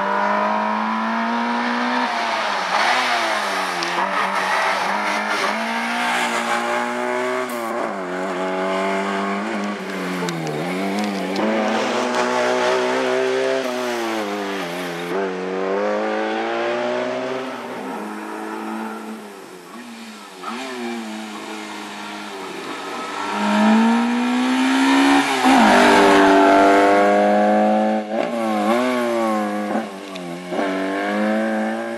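Peugeot 205 Rally's four-cylinder engine revved hard through the gears during a slalom run, the pitch climbing and dropping again every couple of seconds as the driver accelerates and lifts between the cones. It falls quieter a little past the middle and is loudest a few seconds before the end.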